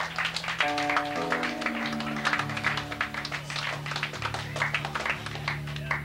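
Live rock band playing: electric guitar and low bass notes shifting every second or so, under steady, rapid drum and cymbal hits.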